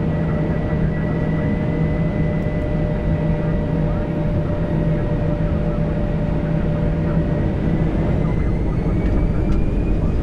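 Airliner jet engines running at the start of the takeoff roll: a steady hum with whining tones. One tone begins to rise about eight seconds in, and the sound grows slightly louder toward the end.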